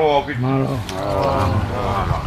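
A voice calling out in long, drawn-out phrases that rise and fall in pitch, three in quick succession: the chanted formal calls of a Tongan kava ceremony.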